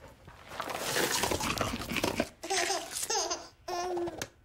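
About two seconds of dense crackling, rattling noise, then a cartoon baby babbling and laughing in short bursts.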